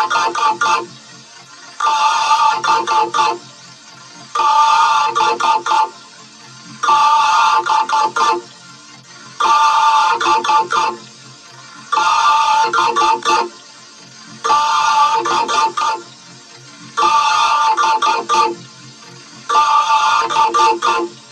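A short, effects-processed voice clip of rapid "kokoko" syllables, looped over and over. It comes about once every two and a half seconds, with short quiet gaps between repeats, and sounds musical and ringtone-like.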